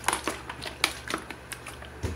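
A 2-litre PET plastic bottle nearly full of water and bleach being shaken by hand to mix the solution, giving a string of irregular plastic clicks and crackles.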